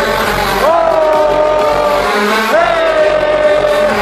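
Electronic dance music from a live DJ set over a festival sound system: a synth lead note sweeps up and holds, twice about two seconds apart, over a heavy low bass.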